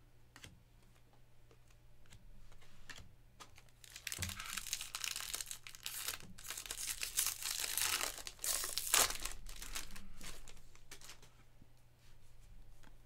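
Foil wrapper of a 2024 Bowman baseball jumbo card pack crinkling and tearing as it is ripped open, loudest from about four seconds in until near the end. Before it come light clicks of trading cards being handled.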